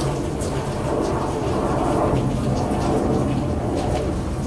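Steady rain and wind: a low rumble under an even hiss.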